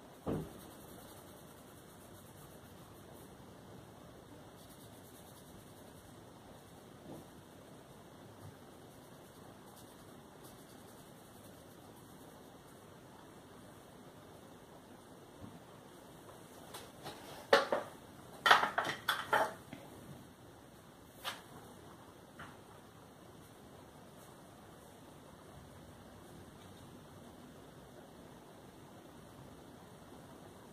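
Quiet room tone, broken a little past the middle by a short run of sharp clicks and knocks from objects being handled on a desk, with a couple more single clicks soon after.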